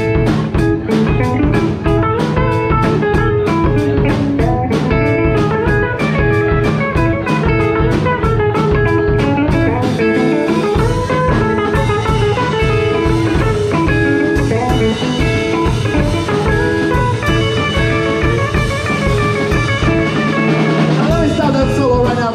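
Live band playing an instrumental passage on electric guitars and drum kit, with a steady cymbal beat. The low end drops out briefly about ten seconds in and again near the end.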